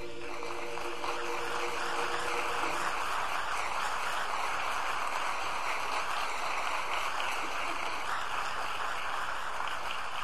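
A men's barbershop chorus's last held chord fading out about three seconds in, under audience applause that starts right away and carries on steadily.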